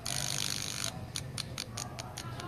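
Small loudspeaker driven by a homemade 5 V mini amplifier circuit, giving a burst of hiss in the first second and then a string of sharp, irregular clicks over a faint hum.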